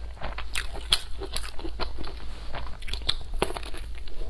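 Close-miked eating: irregular wet chewing and small crunches of food in the mouth, in quick uneven clicks.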